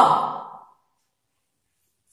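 A woman's voice drawing out a single recited alphabet syllable that trails off breathily and fades within the first second, then silence.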